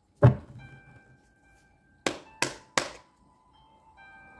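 Tarot card deck knocked against a cloth-covered table: one sharp thunk, then three more in quick succession past the middle, with soft, steady background music tones underneath.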